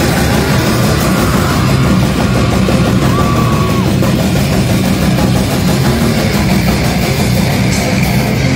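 Live metal band playing: distorted electric guitars, bass guitar and drum kit in a loud, dense wall of sound, with a short bent note about three seconds in.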